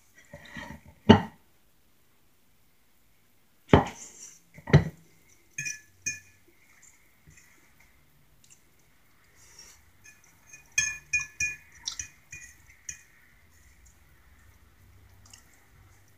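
Metal fork clinking and scraping against a plate while scooping food, in scattered sharp taps: a few in the first five seconds and a quick run of them about eleven to thirteen seconds in.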